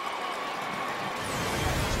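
Broadcast replay-transition whoosh, a sound effect that swells over the last second with a heavy low end, over steady stadium background noise.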